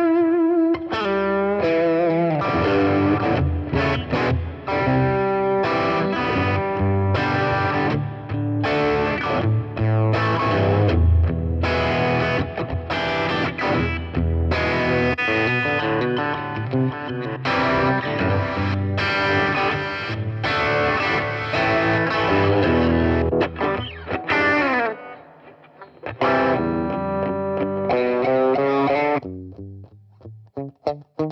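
Electric guitar played through a Zoom G3Xn multi-effects processor, running through its preset patches. The playing breaks off for about a second near the end, then starts again.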